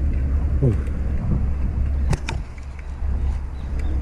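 Steady low rumble of wind and road noise on the microphone while riding a bicycle, with a couple of sharp clicks or cracks a little after two seconds in.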